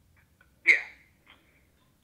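A single short "yeah" from a man's voice heard through a phone's loudspeaker, thin and lacking bass, about two-thirds of a second in. A few faint ticks come just before it.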